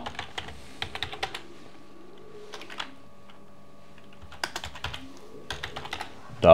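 Typing on a computer keyboard in short runs of keystrokes separated by pauses: a run about a second in, a few keys near three seconds, and more runs from about four and a half seconds to the end.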